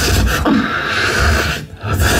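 Live beatboxing into a handheld microphone over a PA system: a deep bass line under hissy high sounds, dropping out briefly near the end.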